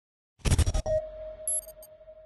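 Logo intro sound effect: about half a second in, a quick run of five or six scratchy hits, then a single held tone with a brief high sparkle of chime-like notes.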